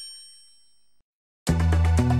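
A high chime rings out and fades away over about the first second, then after a short silence background music with a deep bass and steady beat starts about a second and a half in.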